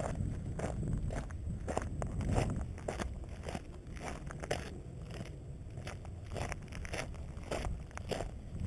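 Footsteps crunching on loose rock and gravel, irregular short crunches, over a steady low rumble.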